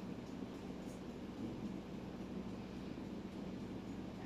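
Quiet room tone: a faint steady hiss with a low hum underneath and no distinct events.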